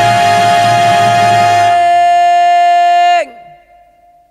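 A male jazz singer holds one long, steady high note on the word 'going' over a jazz band. The note and the band cut off together about three seconds in, with a slight fall in pitch, leaving a brief break in the music.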